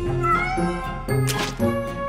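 A cat meows once, a short cry that glides up in pitch, over background music.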